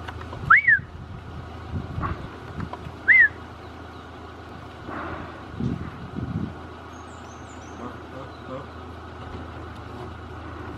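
Two short, loud whistles, each rising then falling in pitch, about two and a half seconds apart, over a steady low hum.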